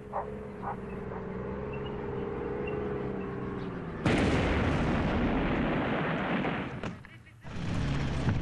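A steady droning hum, then a sudden loud explosion about four seconds in, an explosive charge detonating with a rumble that lasts about three seconds before dying away.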